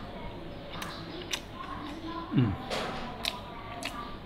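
A man chewing a mouthful of stir-fried food, with a few sharp clicks of a metal spoon and fork against a plate, and a short hummed "mmm" of approval about two seconds in.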